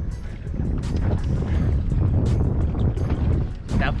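Wind buffeting the camera microphone aboard a boat on open water, a steady low rumble, with background music and a faint beat over it.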